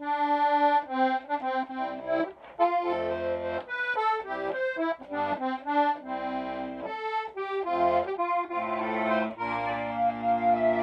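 Hohner Erika club-model two-row button accordion in C and F playing a tune: a melody on the treble buttons with bass and chord notes coming in at intervals, fuller near the end. Its steel reeds are tuned to A440 with a tremolo beat of about 1.8 a second on the low notes rising to 7.5 on the high notes.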